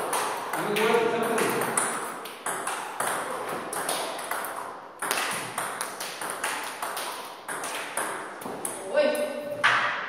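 Celluloid-type table tennis balls clicking off rubber paddles and bouncing on the table in a quick, steady run during multiball backhand topspin practice against backspin feeds. The clicks stop near the end.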